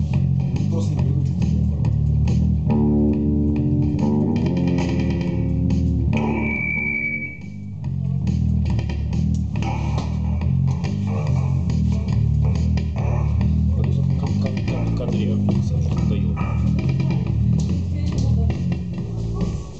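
Live band playing loud, heavy music, led by a low bass-guitar riff of stepping notes. A held droning tone sounds about three seconds in, and a high whine follows around six to seven seconds, just before a brief dip in loudness.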